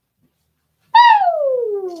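A pet bird calls out a loud 'woo': one long, whistle-like note that starts about a second in and slides smoothly down from high to low.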